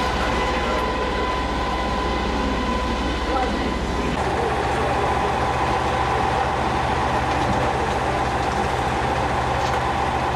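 A steady machine drone with a held whine and a low hum; about four seconds in the whine shifts slightly lower and carries on.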